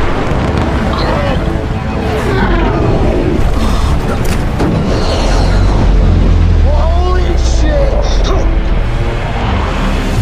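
Film soundtrack mix: F-14 Tomcat jet engine roar under a music score, with a deep rumble that swells in the middle.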